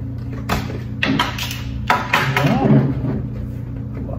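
Background music with a steady low chord, broken by several sharp clicks and knocks at uneven intervals of about half a second to a second, and a short voiced sound in the middle.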